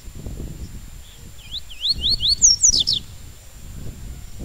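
Yellow-bellied seedeater (papa-capim) singing its 'tui-tui' song: a phrase of about four rising whistled notes that quicken into a few higher, faster notes, ending about three seconds in. Low rumbling noise comes and goes underneath.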